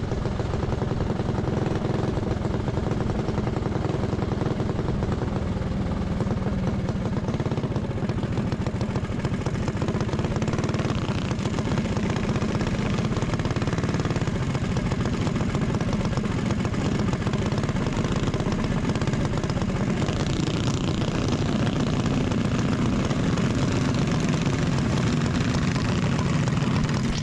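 Single-cylinder Predator 212 kart engine running steadily as the kart slows off the dirt track into the pits, heard close up from the kart itself.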